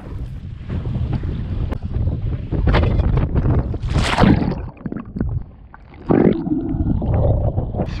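Sea water splashing and sloshing around an action camera held at the surface by a swimmer, with wind rumbling on the microphone; a loud splash about four seconds in as he dunks himself.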